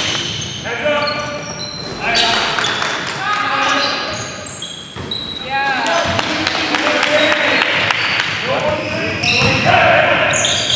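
Basketball game sounds in a large echoing gym: sneakers squeaking in short high chirps on the hardwood floor, a basketball bouncing, and players' voices calling out.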